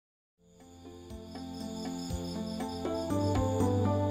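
Silence, then soft background music fading in about half a second in and slowly growing louder, over the steady chirping of crickets as a night ambience.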